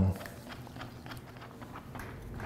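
A stir stick stirring paint in a small plastic mixing cup: faint, irregular light clicks and scrapes as the stick knocks and drags against the cup walls.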